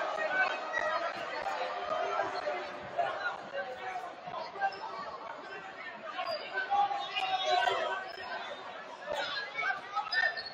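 Spectators chattering in a gymnasium, many overlapping voices with no single clear speaker.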